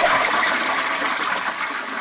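Toilet flushing: a loud, steady rush of water.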